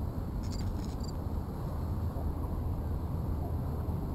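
Insects chirping, likely crickets: a few short, high chirps about half a second in, over a steady low rumble.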